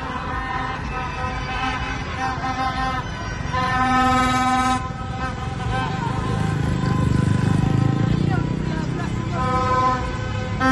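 Plastic stadium trumpets (vuvuzela-type horns) blown in long steady blasts, one clearly louder for about a second near the middle, over crowd shouting and vehicles running in the street.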